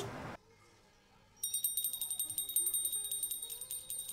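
Small brass puja hand bell rung rapidly, starting about a second and a half in after a brief hush, in quick even strikes with a high, steady ring.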